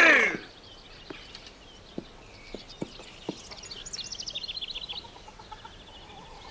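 A songbird sings a quick run of high repeated chirps lasting about a second, a little past the middle, over a quiet country background. A few scattered sharp knocks come earlier.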